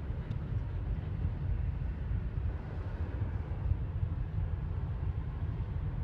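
Car driving at highway speed heard from inside the cabin: a steady low road-and-engine rumble with no distinct events.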